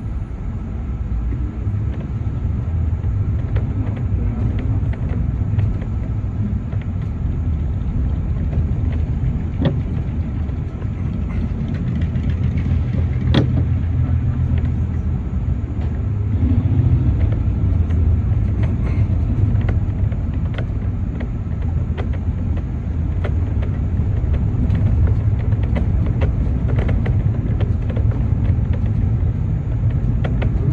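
City bus heard from inside while driving: a steady low engine and road rumble, with scattered light clicks and one sharper knock about 13 seconds in.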